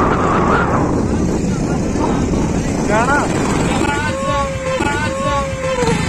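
Wind buffeting the phone's microphone outdoors, a loud, uneven rumble throughout. A person's voice rises in a short call about three seconds in, and drawn-out voiced sounds follow near the end.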